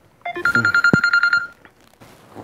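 Mobile phone ringing: a high electronic tone, pulsing rapidly, lasting a little over a second.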